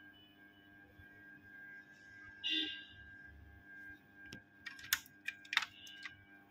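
Several sharp clicks near the end, of metal tweezers tapping against a laptop motherboard and its components, over a faint steady electrical whine; a brief hiss about halfway through.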